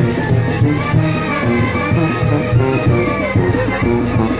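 A brass band playing chinelo dance music, with a steady, driving beat.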